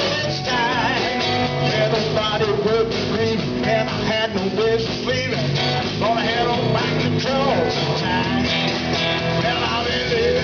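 Live country-rock band playing an instrumental break: an electric guitar lead line with bent notes over rhythm guitar, electric bass and a drum kit.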